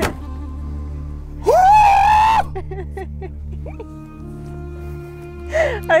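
A man's loud, drawn-out celebratory yell about one and a half seconds in, held for about a second over a steady background music bed; faint short repeats of it come back as an echo off the lake.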